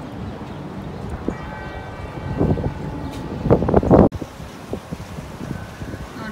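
Church bells ringing faintly, announcing mass, with gusts of wind buffeting the microphone that grow loudest a few seconds in. The sound cuts off abruptly about four seconds in.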